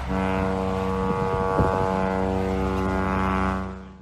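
A steady, sustained electronic drone tone with many even overtones, with a brief flutter about a second and a half in, fading out near the end.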